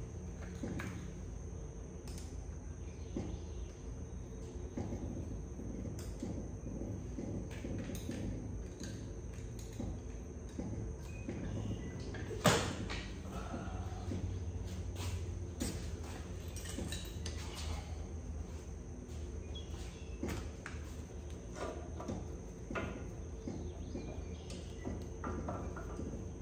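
Scattered clicks and knocks of hand tools and metal parts being handled while working on a dirt bike's carburetor, over a steady low hum; one sharp, louder knock comes about halfway through.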